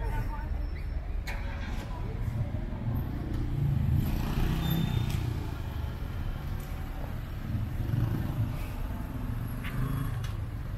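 City street traffic: a steady low rumble of car and bus engines, swelling as vehicles pass.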